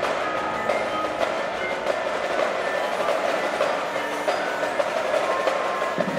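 An indoor percussion ensemble playing: a marching drumline's fast, dense stick strokes over short pitched notes from marimbas and other mallet keyboards.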